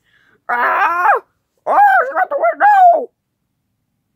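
A child's high voice making wordless, drawn-out cries in two bursts, the second broken into several rising and falling wails.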